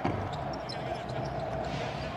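Basketball arena sound during live play: a steady crowd noise with faint court sounds under it, heard through a TV broadcast.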